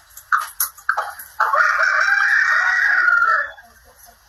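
A rooster crowing once, a loud drawn-out call of about two seconds starting about a second and a half in.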